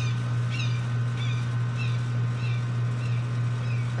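A bird chirping repeatedly, short notes every half second to a second, over a steady low hum.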